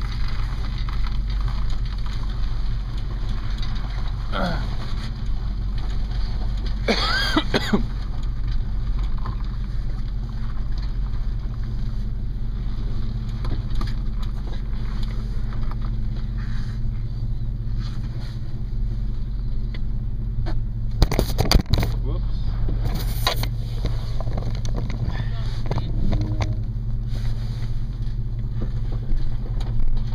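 Tow vehicle's engine running steadily while reversing a boat trailer down a launch ramp, heard from inside the vehicle's cargo area, with a few short voice-like sounds over it.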